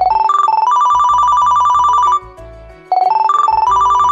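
An ASUS smartphone ringing with an incoming call: a loud ringtone tune, a few rising notes and then quick repeated high notes. It breaks off about two seconds in and starts over less than a second later.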